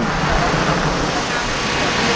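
Road traffic noise: cars passing on the street, a steady noise of tyres and engines.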